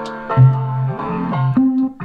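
Synth bass preset ('Wonk bass') played from the Ableton Push 3's pads: a few separate bass notes, the loudest a low note about a third of a second in, with a higher note near the end.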